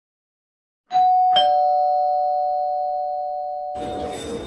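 Two-note ding-dong doorbell chime: a higher note struck about a second in, a lower one half a second later, both ringing on and slowly fading.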